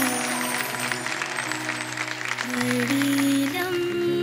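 Audience clapping over held instrumental music notes. The clapping is thickest in the first half, and the music carries on underneath throughout.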